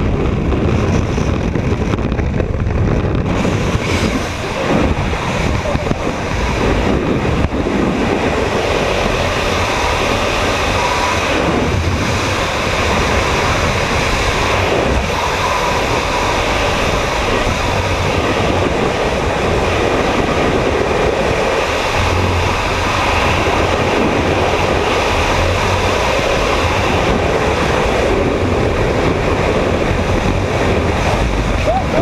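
Loud, steady rush of freefall wind buffeting a helmet-mounted camera's microphone during a skydive.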